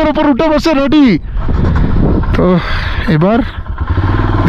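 Men's voices talking, loudest in the first second and again in two short bursts later, over a steady low rumble.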